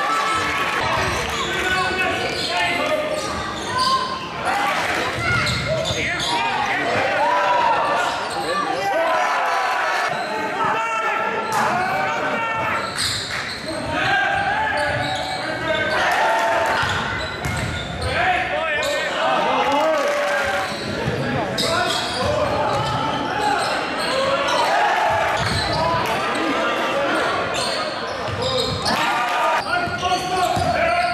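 A basketball bouncing on a hardwood sports-hall floor during live play, under a steady mix of players' and spectators' voices and shouts. Everything echoes in the large hall.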